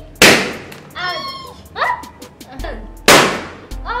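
Two balloons bursting, each a single sharp bang, about three seconds apart, as they are pricked with a wooden skewer.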